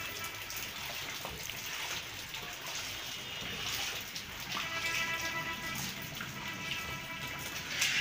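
Gulab jamun dough balls frying in a wide wok of hot oil: a steady bubbling sizzle.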